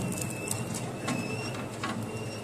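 Twin-shaft metal shredder running with a steady low hum as its toothed rotors turn. A thin high squeal comes and goes, and a few sharp metallic knocks sound through it.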